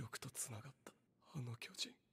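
Faint dialogue from an anime episode playing in the background: two short spoken phrases.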